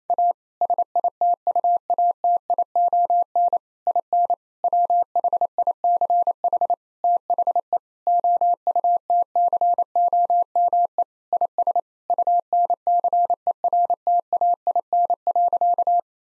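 Morse code sent as a single steady beep tone, keyed on and off at 28 words per minute in short and long elements with longer gaps between words. It spells out the sentence "A situation in which the outcome is uncertain."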